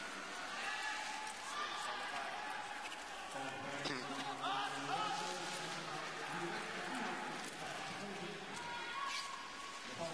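A man's broadcast commentary over a steady background of arena crowd noise.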